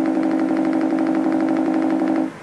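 A steady, buzzy electronic tone with a rapid flutter from a MacBook Pro, set off by a kitten standing on its keyboard and holding down keys.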